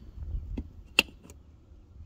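Red rotary battery disconnect switch turned by hand, giving one sharp click about a second in, with a couple of fainter clicks around it. A low rumble comes just before the click.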